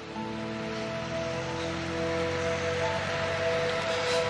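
Dramatic background score of soft, sustained chords held steady, over a faint even hiss.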